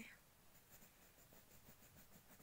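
Faint scratching of a crayon being rubbed back and forth on paper as a drawing is coloured in.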